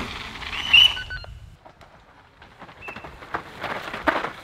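Downhill mountain bike on a muddy dirt track: tyre noise with a short, shrill high-pitched squeal under a second in, then quieter ticking and a run of sharp clicks and rattles from the bike near the end.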